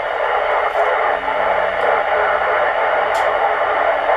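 Steady FM receiver hiss from a Yaesu transceiver's speaker: a weak, noisy 2 m signal from a distant EchoLink station, heard with the low-noise preamp switched off. A faint click comes about three seconds in.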